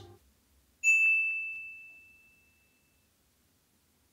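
A single high, bell-like ding about a second in, ringing out and fading away over about a second and a half, with near silence around it.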